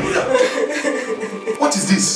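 A person crying in a high, wavering voice, with a short break and a fresh sob near the end.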